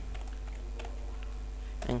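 A few light keystrokes on a computer keyboard as a short word is typed into a text box.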